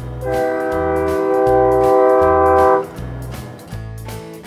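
Freight train locomotive's air horn blowing one long, steady chord of several notes for about two and a half seconds, cutting off near three seconds in. Background music with a low bass line plays underneath.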